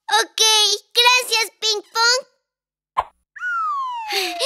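High-pitched cartoon character voice vocalizing in short phrases, then a single short pop and a long falling whistle-like sound effect that slides steadily down in pitch.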